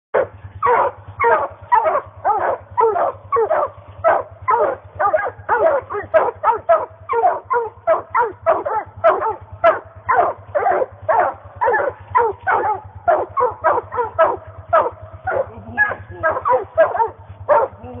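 Dogs barking at the base of a tree without a break, about two barks a second. This is tree barking, as hunting dogs do when they have treed game.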